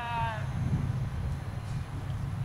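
A person's brief high-pitched shouted call, slightly falling in pitch, in the first half-second, over a steady low rumble.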